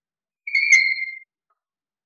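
Chalk squeaking on a blackboard while drawing a circle: one high squeal, a little under a second long, sliding slightly down in pitch.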